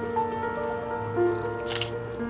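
Background music with sustained, even notes, and a single camera shutter click near the end as a photo is shown.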